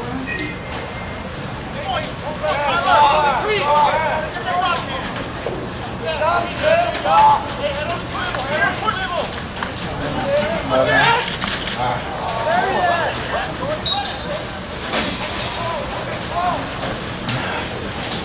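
Voices of players and spectators calling out and talking across an outdoor lacrosse field, overlapping and coming and going, with a few sharp clacks and a brief high tone near the end.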